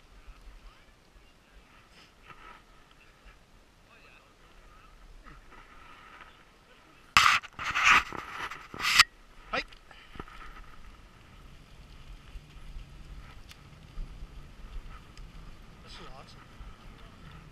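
Sled dogs panting as the husky team pulls the sled over snow. A cluster of loud, harsh noise bursts comes about seven to nine seconds in.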